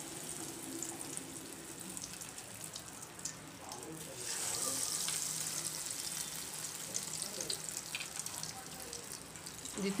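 Egg-coated chicken kebabs shallow-frying in hot oil, a steady sizzle with small crackles. It grows louder about four seconds in as a second kebab goes into the oil.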